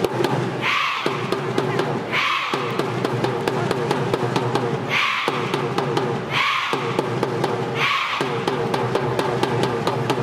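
A large group of schoolgirls chanting together to a steady drumbeat of about four beats a second, with loud unison shouts repeated every second or so.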